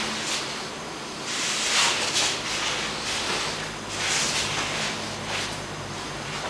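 Jiu-jitsu gis rustling and bodies shifting on a mat as two grapplers work an escape from the mount, in two slow hissy swells over a faint steady low hum.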